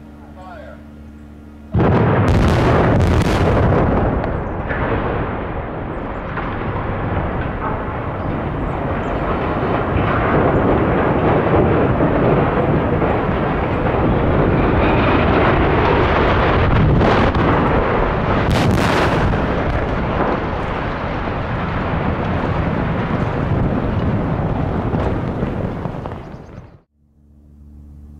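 Explosive demolition of two tall concrete chimneys. A sudden volley of loud blasts comes about two seconds in, then a long, continuous rumble as the stacks topple and crash down, with more sharp cracks around seventeen to nineteen seconds in.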